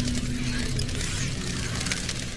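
Small toy car driving across carpet: its little electric motor and wheels make a steady noisy running sound.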